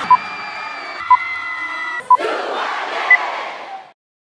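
Film-leader countdown beeps, one short tone each second, the last one higher in pitch, over a crowd cheering and shouting. The crowd sound shifts at each beep as the clips change, and all sound stops abruptly just before the end.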